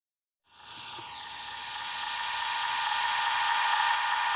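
Electronic intro sound effect: a hissing swell with a steady tone in it starts about half a second in and grows steadily louder, with a brief falling sweep near its start.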